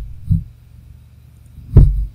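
Two dull, low thumps, a soft one about a third of a second in and a much louder one near the end, over a faint steady hum.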